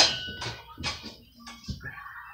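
A quiet room in a pause between speech: a few soft clicks and a faint, steady high-pitched tone.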